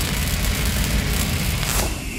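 Intro sound effect for an animated title card: the long, noisy, low-heavy tail of a cinematic boom, with crackle, easing off slowly, and a short whoosh near the end.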